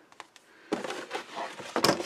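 Paper and card rustling and crinkling as a handmade gift bag is handled, starting about half a second in with a sharp crackle near the end.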